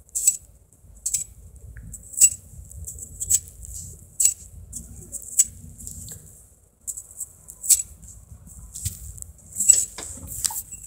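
Plastic coil spring toy being played with: sharp, light clicks and rattles about once a second, over a faint low rumble.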